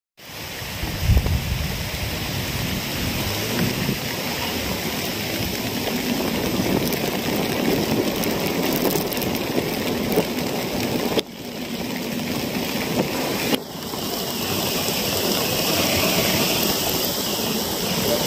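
Steady rush of heavy rain and floodwater churned up by a vehicle driving through a waterlogged road. The sound drops out sharply for a moment twice, about two-thirds of the way through.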